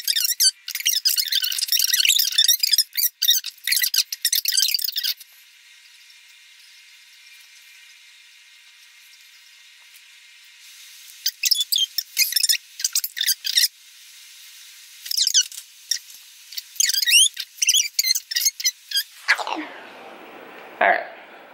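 High-pitched squeaky chatter in quick bursts, with a stretch of quiet hiss from about five to ten seconds in. Near the end the pitch sweeps sharply down into a normal-sounding voice.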